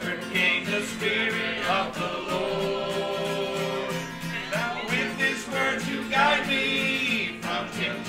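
Small church choir singing a country gospel song to acoustic guitar, with one long held note in the middle.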